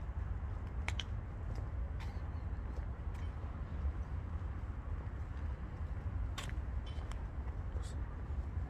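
Wind rumbling on a handheld smartphone's microphone outdoors, steady and low, with a few faint scattered clicks.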